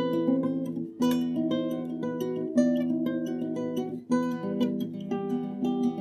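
Background music on acoustic guitar: a steady run of picked notes, broken by two brief dips, about a second in and about four seconds in, each followed by a sharp fresh strum.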